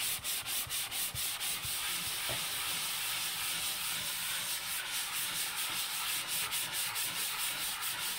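Hand sanding block rubbed over dried drywall joint compound in quick back-and-forth strokes, a scratchy hiss of about five strokes a second that smooths into a steadier rasp in between. It is sanding down a hump and rough edges in the mud patch to a feathered edge.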